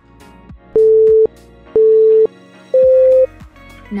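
Three loud electronic beeps, each about half a second long and a second apart, the third higher in pitch, in the pattern of an interval timer's countdown marking the end of a timed stretch. Background music with a steady beat plays underneath.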